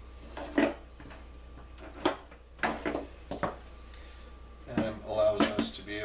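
Rigid ABS plastic end sections of a fiber optic splice closure being slid off and set down on a table: a few hard plastic knocks and scraping clatters, spread across the first few seconds.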